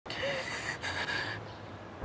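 A woman's gasping, sobbing breaths, two of them in quick succession, that fade out after about a second and a half.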